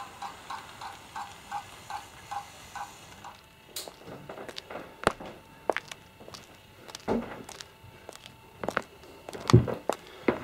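Hornby 00 gauge model steam train running on its track with an even rhythmic clicking, about three a second, that dies away a few seconds in as the train stops at the station. Scattered sharp clicks and knocks follow, the loudest near the end.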